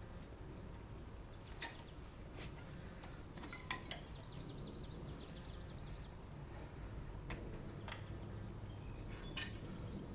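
Aluminium wheelchair frame and rocking tracks giving several sharp metal clicks and clinks, scattered through, as weight comes onto the chair and it begins to rock. Steady low outdoor background noise underneath.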